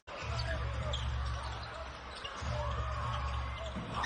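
Live basketball court sound: a ball bouncing and sneakers squeaking on the hardwood over a steady low arena rumble, with one longer rising-and-falling squeak about three seconds in.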